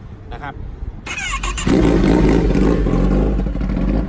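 Kawasaki ZX-10R inline-four engine cranked on the electric starter about a second in, catching and then running loudly and steadily.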